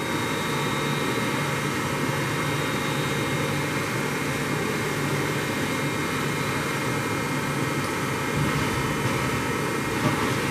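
Matsuura MC-760VX vertical machining center running as its table is jogged along the X axis by its axis drives: a steady mechanical hum with thin high whine tones.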